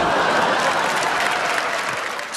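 Audience applause from a large crowd, a dense steady clatter of clapping that eases slightly near the end.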